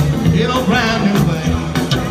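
Live rockabilly band playing with upright bass, guitars and drums in a steady beat.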